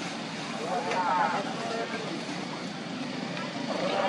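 Voices of onlookers talking over a steady rushing background noise, with one voice standing out about a second in and another near the end.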